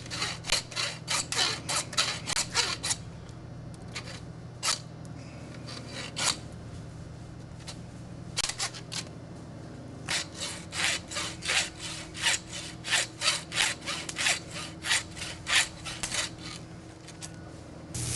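Back-and-forth rasping strokes of a blade sawing through a deer carcass, about three strokes a second. They come in runs: one at the start, a few single strokes in the middle, and a long run in the second half.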